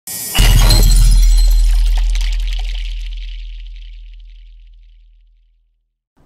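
Intro sound effect: a deep boom hit with a crash like shattering glass about half a second in. The crash dies away over a few seconds and the low rumble fades out over about five seconds.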